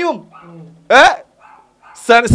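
A single short, sharp yelp about a second in, its pitch sweeping sharply upward.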